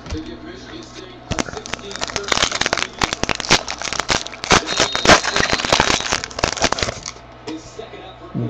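A trading-card pack's wrapper being torn open and crinkled: a dense run of crackles and rips that starts about a second in and stops shortly before the end.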